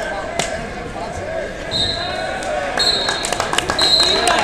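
Crowd chatter in a gym, with a run of knocks and thuds in the second half as the wrestlers go down to the mat, and a few short high squeaks.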